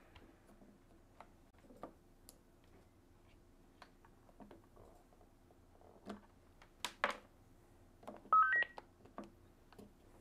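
AnyTone AT-D878UV handheld radio being switched off and back on with its top power/volume knob: scattered small knob and handling clicks, a louder click about seven seconds in, then the radio's power-up tone, three quick beeps stepping up in pitch, a little after eight seconds.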